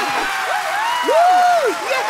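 Several voices giving long, rising-and-falling "ooh" calls of amazement, overlapping one another, in a cartoon soundtrack.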